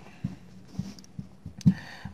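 Faint handling sounds of a cloth being laid and pressed flat on a car dashboard, with a few soft taps.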